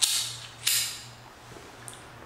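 Two sharp clicks about two-thirds of a second apart, each trailing off briefly in a small tiled bathroom, over a low steady hum.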